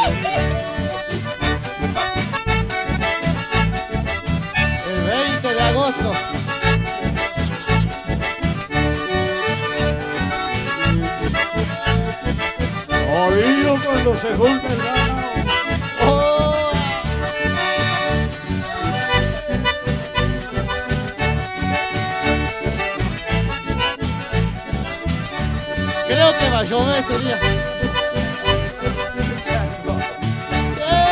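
A live band plays an instrumental passage of dance music led by accordion, over a steady bass beat.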